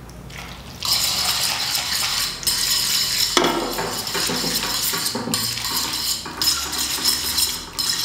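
A metal fork stirring and tossing fresh fettuccine in a stainless steel frying pan, scraping against the pan, starting about a second in. The butter, parmesan and starchy cooking water are being worked into an emulsified sauce.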